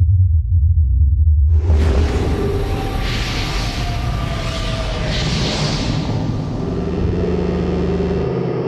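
Demo of sci-fi sound-design presets from Zero-G's Space sample library. A deep sub-bass rumble gives way suddenly, about a second and a half in, to a wide hissing cosmic texture with sustained tones beneath it, swelling twice in the middle.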